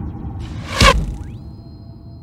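Whoosh sound effect of a bullet flying past, swelling and cutting off sharply just under a second in, over fading background music. A high thin tone then rises and holds.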